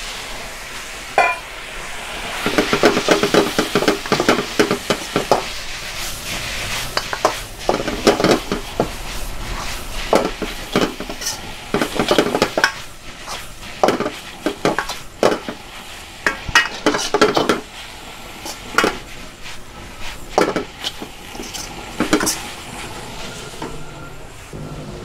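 Noodles and cabbage stir-frying in a wok: a steady sizzle under repeated scrapes and clinks of a metal spoon against the wok as the food is tossed.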